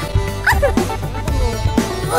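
Children's cartoon background music with a steady low beat, over a cartoon baby's whimpering voice effect: short sliding whines, the clearest rising sharply and dropping about half a second in.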